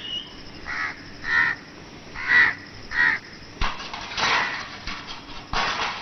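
A crow cawing repeatedly in short, separate calls, about five in the first three seconds, then rougher calls later on. Two sharp knocks come in the second half.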